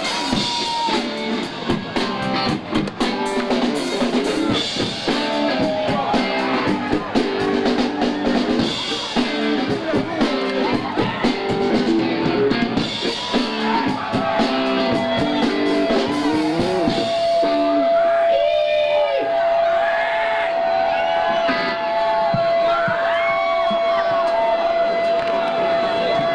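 Live punk rock band playing fast, loud music with electric guitar and drums; the music stops about sixteen seconds in. A single steady high tone starts shortly before that and holds to the end, with voices shouting over it.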